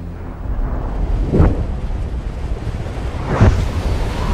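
Film sound design: a deep, rushing rumble like wind or surging spray, swelling sharply twice, about a second and a half in and again near the end.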